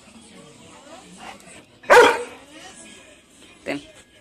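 Old English Sheepdog giving a single loud bark about two seconds in, with a shorter, quieter sound near the end.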